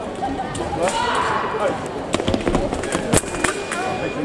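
A sabre fencing exchange: a quick run of sharp clicks and knocks from footwork and blade contact, the loudest just past three seconds. Right after it comes a steady high tone from the scoring machine signalling a hit.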